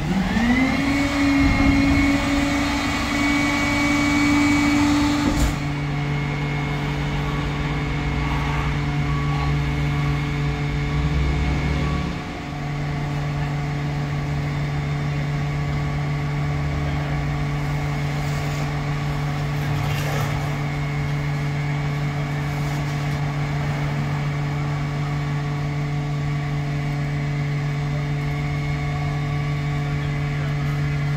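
An engine runs steadily with a constant low hum. At the start a second motor note rises in pitch, holds for a few seconds, then cuts off abruptly about five seconds in.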